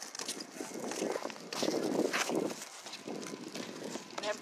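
Footsteps knocking irregularly, with wind buffeting the phone's microphone.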